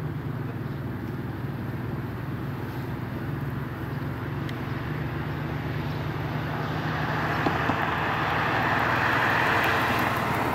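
A car driving past on the street, its tyre and road noise swelling over the last few seconds, over a steady low rumble of outdoor background noise.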